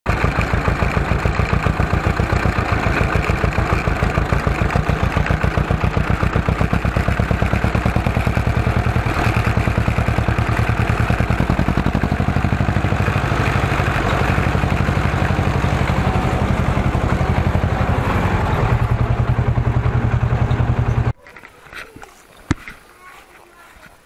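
Ursus C330 tractor's two-cylinder diesel engine running as the tractor drives, a loud, even, fast exhaust chug heard close to the exhaust stack. It cuts off suddenly near the end.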